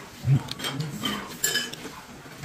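Metal chopsticks and spoon clinking against a stainless-steel noodle bowl and dishes, with a few sharp ringing clinks, the clearest about a second and a half in. A short low thump comes just before them, near the start.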